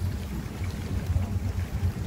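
Boat's outboard motor running steadily while trolling, a low rumble under an even hiss of wind and water.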